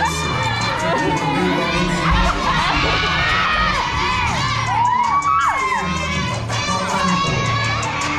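Audience of children shouting and cheering, many voices rising and falling in short whoops, over dance music with a steady bass beat.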